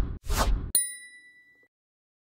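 Logo sound effect: two quick whooshes, then a bright chime-like ding about three-quarters of a second in that rings out for about a second before silence.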